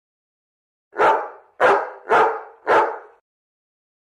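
A dog barking four times in quick, evenly spaced succession, each bark loud and short.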